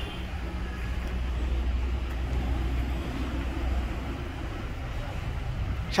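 Steady low rumble of motor vehicle noise.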